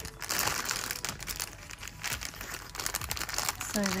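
Thin clear plastic packaging bag crinkling as it is pulled open and handled, a dense run of quick crackles.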